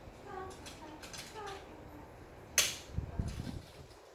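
A single sharp click of hard plastic toy parts being fitted together, followed by a short spell of low knocks from handling the pieces. Faint talking is heard underneath early on.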